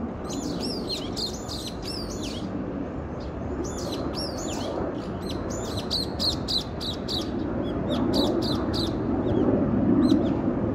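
A small songbird calling in bursts of bright, high chirps, several quick notes at a time with pauses between. A low steady rumble runs underneath and grows louder near the end.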